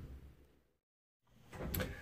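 Quiet room tone that drops out to dead silence at a cut in the recording, then returns with faint handling noise and a soft knock near the end.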